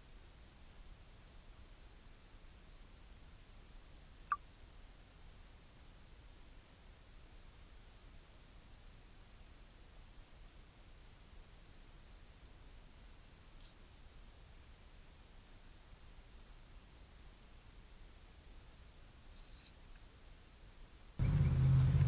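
Faint, steady low hiss from a GoPro submerged in a pond, with one sharp click about four seconds in. About a second before the end it cuts to much louder open-air sound with a low rumble.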